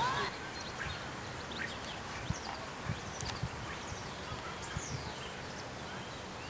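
Outdoor birdsong over a steady hiss: a honking call at the very start, then scattered short high chirps. A few soft low thumps fall in the middle.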